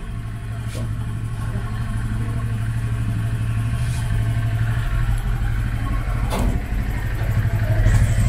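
Modified Honda Click 125 scooter's single-cylinder engine running steadily at low revs while warming up on a dyno, its level creeping up slowly. A short knock comes about six seconds in.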